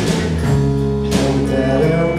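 Live band playing a song: guitar and bass guitar sustaining chords, with a couple of sharp accents near the start and about a second in, between sung lines.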